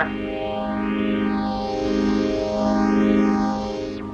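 Background-music cue: a single held electronic note run through a flanger, its tone sweeping up and down about twice, fading away near the end.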